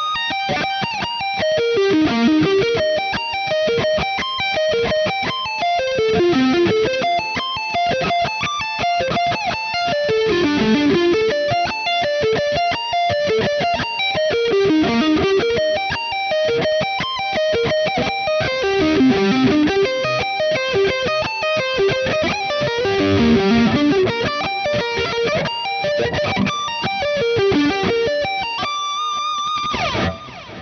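Ibanez electric guitar, played through an amp, playing slow sweep-picked arpeggios. Runs of single notes go down and back up across the strings, a new shape about every four seconds.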